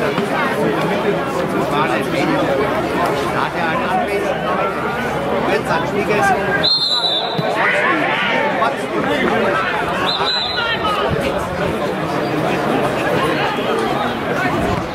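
Several people talking at once in indistinct sideline chatter, with a single "oh" near the end. The sound breaks off abruptly about seven seconds in and picks up again.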